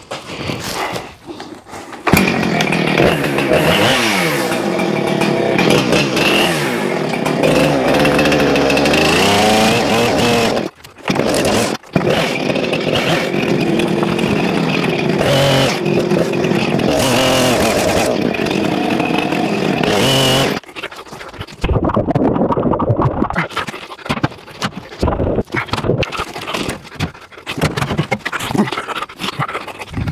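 Husqvarna 455 Rancher gas chainsaw cutting up a thick fallen tree branch, its engine revving up and down under load, with two brief breaks midway. It turns quieter and more broken up in the last third.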